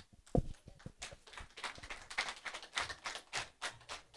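A quiet run of irregular light taps and knocks, several a second, with one sharper knock near the start.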